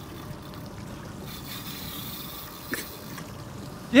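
Water gently lapping and trickling against the hull of a drifting boat, with a single faint click about two-thirds of the way through.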